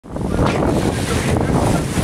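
Wind buffeting the microphone: a steady rushing noise with a low rumble.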